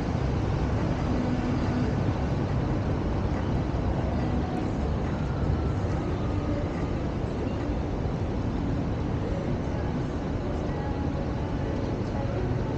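Steady outdoor city ambience: a low, even rumble of road traffic with no distinct events.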